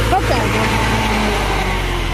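HMT 3522 tractor's diesel engine running steadily under heavy load, hauling a fully loaded trolley, its pitch sagging slightly near the end.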